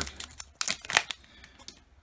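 Crinkling of a foil booster-pack wrapper as the cards are drawn out, with two sharp crinkles about half a second and a second in, then only faint handling.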